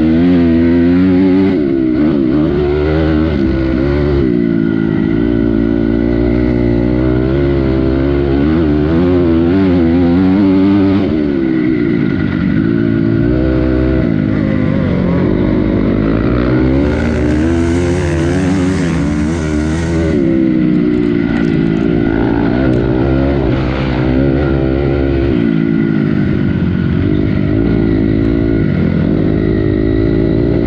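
Honda CRF250R four-stroke motocross bike engine, heard close from on board, revving up and down continually as it is ridden through the gears. A rushing hiss joins it for about three seconds just past the middle.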